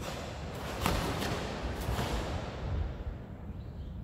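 A karate uniform (gi) snapping and swishing with fast techniques during a kata. There is a run of sharp snaps between about one and two seconds in, fading by three seconds.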